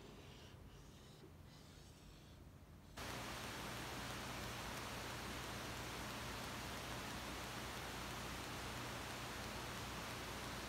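A steady, even hiss with a low hum under it starts abruptly about three seconds in and holds unchanged; before that it is nearly quiet.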